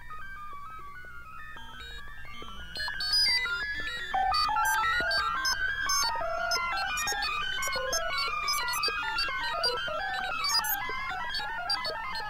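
Electronic music from a synthesizer ensemble: many short, pitched, keyboard-like notes in quick overlapping patterns. The patterns start sparse and grow denser and louder about three to four seconds in.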